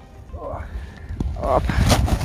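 Brief muffled speech over a steady low rumble, with a faint click about a second in.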